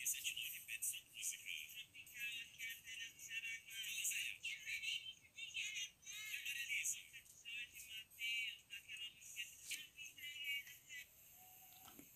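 FM radio broadcast of music with a voice, played by a Motoradio Motoman pocket radio and heard faint and tinny through a small earphone held to the recording phone's microphone, with no bass. The radio's FM reception is working.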